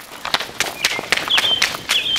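Running footsteps on pavement, about four or five quick steps a second, mixed with the knocks of a handheld camera being jostled as its operator runs. A few short high chirps sound between the steps.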